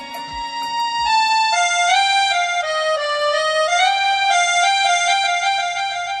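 Instrumental opening of an old Hindi film song: a single melody line played in held notes that step down and then climb back up, over a low held tone that fades out in the first second and a half.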